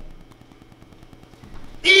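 A pause in a man's preaching: his voice dies away into the hall's echo, leaving faint room noise, and he starts speaking again near the end.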